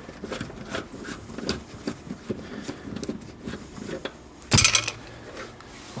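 Small metallic clicks and clinks of a socket tool and a loosened 14 mm seat-mounting bolt as the bolt is spun out by finger, with one louder metal clatter about four and a half seconds in.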